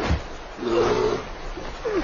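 Two roaring cries: one about half a second long that wavers in pitch a little way in, and a short falling one near the end.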